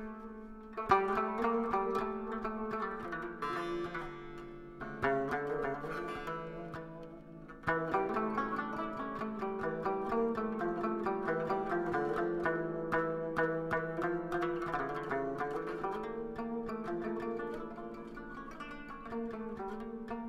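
Traditional instrumental music of plucked string instruments: a melody of quick plucked notes over a sustained low drone, swelling louder about a second in and again partway through.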